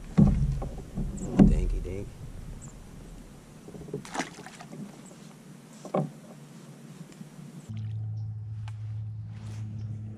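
Handling noise aboard a fishing kayak: loud bumps in the first two seconds while a largemouth bass is handled, then two sharp knocks, like a paddle striking the hull, about four and six seconds in. A steady low hum sets in near the end.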